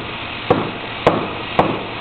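Hammer blows struck at a steady pace, three sharp strikes about half a second apart, over steady background noise.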